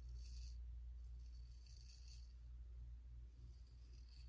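Double-edge safety razor scraping through lathered stubble on the cheek: a few faint, short strokes.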